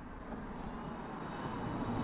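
A car approaching along the street: its tyre and engine noise grows steadily louder.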